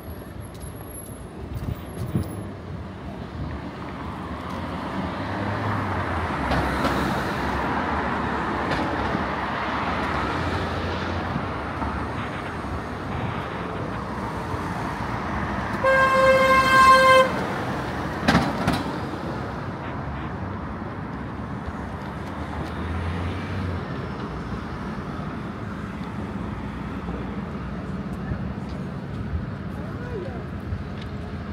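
A vehicle horn honks once, a single steady note lasting about a second, over the steady noise of city street traffic.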